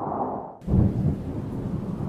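Thunderstorm sound effect: a sudden thunderclap about half a second in, then a heavy rolling rumble over a steady rain-like hiss.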